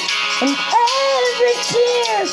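A woman singing a slow ballad into a handheld microphone over a backing track. She holds and bends long notes without clear words.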